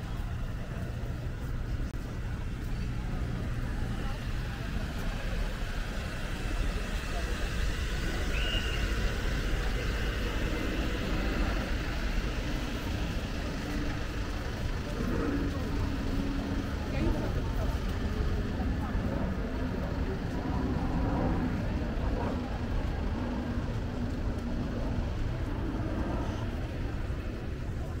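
Outdoor ambience on a busy pedestrian promenade: passers-by talking now and then over a steady low rumble.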